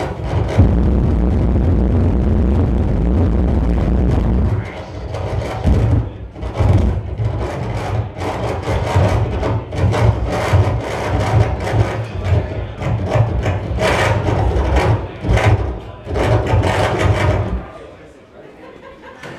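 Live electronic noise music from a table of electronics: a heavy low drone for the first few seconds, then choppy, stuttering bursts of harsh noise that cut off abruptly near the end.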